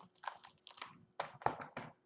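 Pages of a picture book being turned and handled: a quick series of short papery rustles and crinkles.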